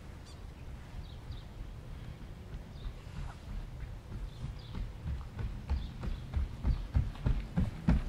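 Outdoor rural soundscape: a steady low rumble with faint, scattered bird calls. From about halfway through, an even series of thumps, about three a second, grows steadily louder.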